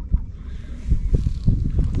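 Wind buffeting the microphone: an irregular low rumble with scattered thumps, and a brief faint hiss near the middle.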